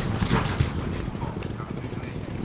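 A field of racehorses galloping on turf, with rapid hoofbeats drumming that are loudest in the first half-second as the horses pass close.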